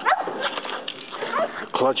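A dog giving a few short yips and whimpers, with people's voices around it.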